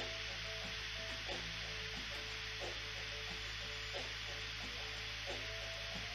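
Faint background workout music, a few soft notes at a time, under a steady hiss and a low hum.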